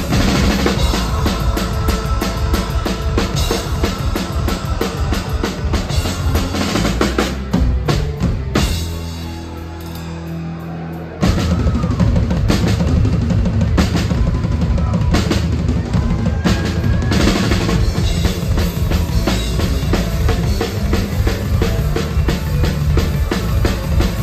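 Punk rock band playing live, heard from the drum riser with the drum kit loud in the mix: fast drumming over bass and guitar. About eight and a half seconds in, the drums stop and a chord is held for a couple of seconds, then the full band comes back in.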